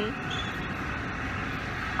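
Steady low background rumble of a large indoor space: airport terminal room tone.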